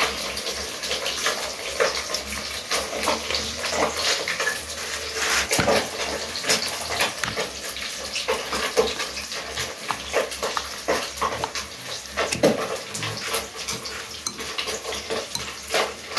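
Fork stirring through runny batter in a bowl and turning chunks of fish meat in it: a continuous run of quick, wet clicks and slaps.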